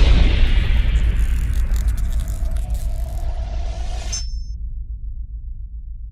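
Cinematic logo-reveal sound effect: a sudden deep boom that dies away slowly into a low rumble. A brighter hiss rides over it and stops about four seconds in, where a brief high shimmer sounds.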